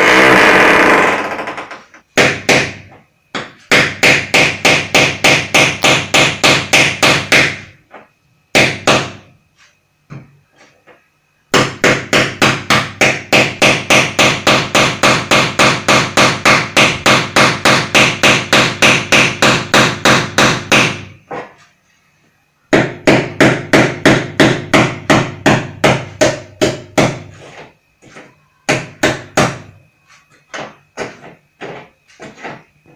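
Hammer drill hammering in bursts a few seconds long with short pauses between them, each burst a fast, even run of blows about five a second. It opens with one unbroken, fading run lasting about two seconds.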